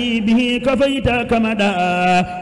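A man chanting Arabic devotional verse solo, a Sufi qasida recited to a melody, holding long notes that step and waver in pitch with a brief break about a second in.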